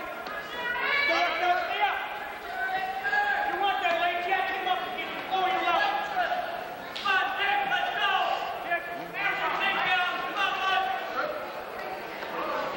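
Men shouting from the sidelines of a wrestling match, several drawn-out yells one after another, ringing in a gymnasium.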